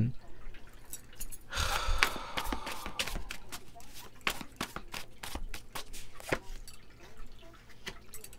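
Tarot cards being handled on a table: scattered light clicks and taps, with a longer rustle of cards about a second and a half in, and a card laid down near the end.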